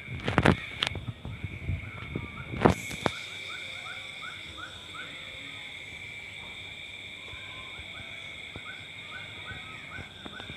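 A night-time insect chorus: a steady shrill drone at two high pitches, with short falling chirps in runs of about three a second. Several loud knocks or bumps in the first three seconds.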